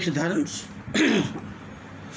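A man clearing his throat once, about a second in, a short rough burst with a falling pitch, right after a spoken phrase ends.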